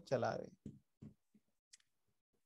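A spoken word, then quiet broken by a few faint small sounds and one short, sharp click about three-quarters of the way through.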